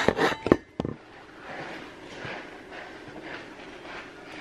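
Phone-camera handling and clothing rustle: a few sharp knocks and scrapes in the first second, then a faint, soft rustling.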